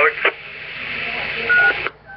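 2-meter amateur repeater heard through a scanner's speaker: a hiss after the talker unkeys, then a short single beep about one and a half seconds in, the repeater's courtesy tone. Near the end the signal cuts off suddenly as the repeater drops its carrier and the scanner's squelch closes.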